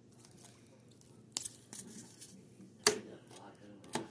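Clear rigid plastic card cases clicking and knocking together as they are handled and set down. A few sharp clicks, one about a second in and two louder ones near the end, with faint rustling between.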